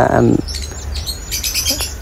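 Birds chirping: a quick run of short, high chirps and rising calls.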